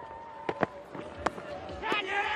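Quiet field audio from a cricket ground with three sharp cracks, two close together about half a second in and a third a little past a second, as the final wicket falls. Commentary picks up again right at the end.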